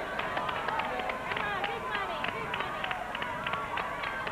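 Wheel of Fortune wheel spinning, its pointer flapper clicking against the pegs at about five clicks a second.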